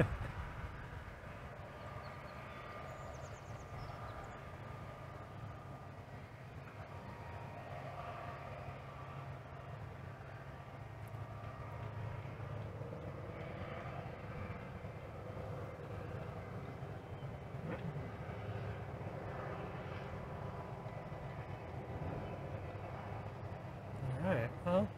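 Steady low rumble of distant engines or machinery, with faint wavering higher tones over it.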